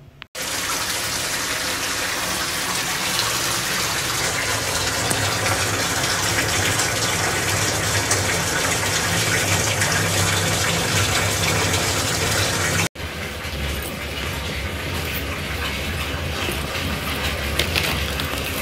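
Water running hard and steadily from a bathroom tap into a tub, an even rushing that cuts off abruptly about 13 seconds in. A quieter, lower steady rushing follows.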